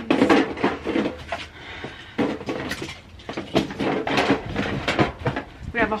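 Rummaging through a plastic storage tote: empty metal cookie tins and decorations knocking and clattering against each other and the bin in irregular clicks and clunks.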